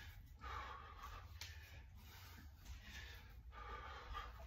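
A man breathing hard and rhythmically, deep into a long set of kettlebell half snatches, with a forceful breath every second or so. There is a single sharp click about a second and a half in.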